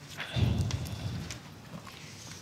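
Paper and microphone handling noise on a table: a cluster of low thumps and light clicks about half a second in, then quieter rustling.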